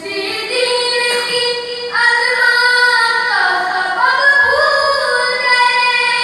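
A boy singing unaccompanied, holding long drawn-out melodic notes; his voice steps up in pitch and grows louder about two seconds in, then winds down and climbs again.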